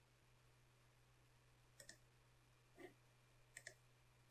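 Near silence: faint room tone broken by a few short, faint clicks, two pairs and a single one about a second apart.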